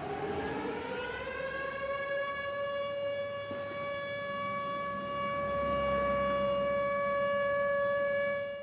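A siren wailing: its pitch rises over the first couple of seconds, then holds one steady tone. A low rumble swells underneath it about five seconds in.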